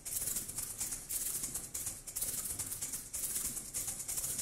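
Hand-shaken percussion, a shaker, played in a steady rhythm of about two hissing strokes a second.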